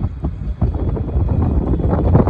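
Wind buffeting the microphone: a low, uneven noise with no tone in it, getting louder about half a second in.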